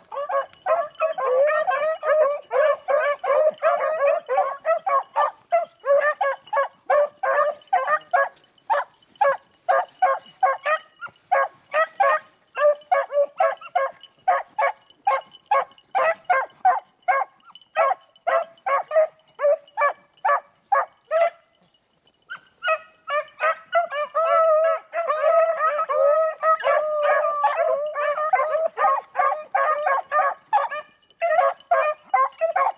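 A pack of beagles baying in chorus on a rabbit's scent trail. The overlapping voices thin to quick separate yelps through the middle, break off for about a second about two-thirds of the way in, then swell back into a full chorus.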